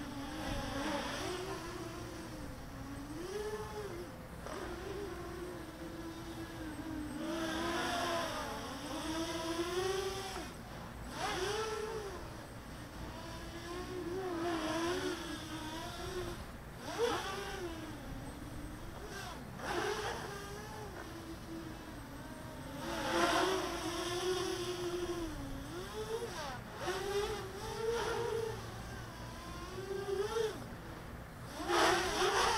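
EMAX Nighthawk Pro 280 quadcopter on DAL 6040 props flying, its motors and propellers giving a buzzing whine. The whine keeps rising and falling in pitch with the throttle and grows louder in several swells.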